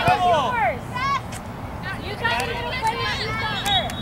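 Raised voices calling and shouting across a soccer field, several overlapping in short bursts, over a steady low rumble.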